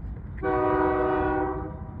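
Diesel locomotive air horn giving one short blast of about a second and a half, over a low rumble.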